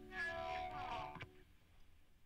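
The last electric guitar notes of a rock track ringing out faintly, with a short wavering whine rising over them, then cutting off to silence about a second in.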